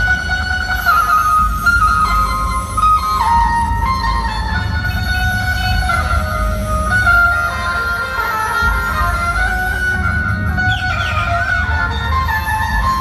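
Dhumal band music: an amplified electric banjo melody over heavy drum and bass, played through a large loudspeaker stack.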